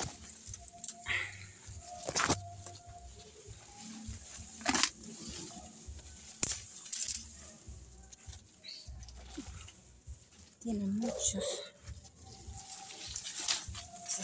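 Leaves and stems of dense chili plants rustling and snapping as a hand pushes through them, with scattered sharp clicks and a low rumble of handling on the phone microphone. A brief louder voice-like sound about eleven seconds in.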